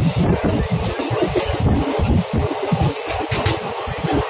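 Wind buffeting a phone microphone: a gusty low rumble that keeps cutting in and out.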